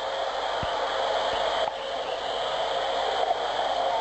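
Steady noise of a busy city street at night, a constant hiss with a faint steady tone in it, and a couple of brief low thumps in the first second and a half.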